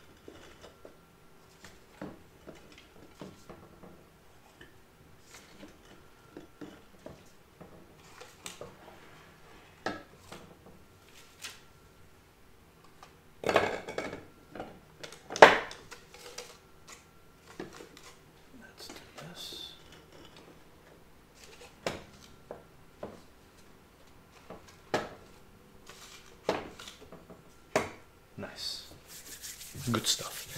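Glass liqueur jars and bottles being picked up, slid and set down on a wooden cabinet top: scattered clinks and knocks, the loudest two about halfway through and a quick run of them near the end.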